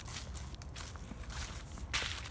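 Footsteps crunching through dry fallen leaves and grass, a few steps, the loudest near the end.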